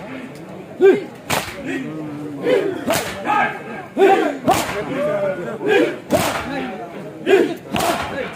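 A crowd of men performing matam, slapping their bare chests together in unison with sharp strokes about every second and a half, while many voices shout and chant between the strokes.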